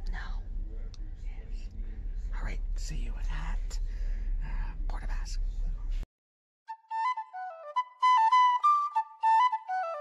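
Quiet whispered talk over the steady low hum of a ferry's passenger cabin. After a cut about six seconds in, background music with a flute-like melody starts.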